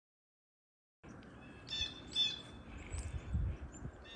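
After a second of silence, faint outdoor background comes in. A small bird chirps twice in quick short phrases, about half a second apart, with a faint low rumble underneath later on.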